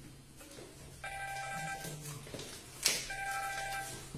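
A repeating electronic tone of several steady pitches, each sounding for under a second and coming back about every two seconds. There is a low steady hum underneath and a sharp click about three seconds in.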